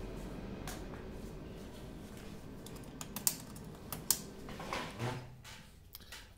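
Steady machine fan noise dying away slowly after being switched off, with a few sharp clicks as a small steel dog tag is handled on a card.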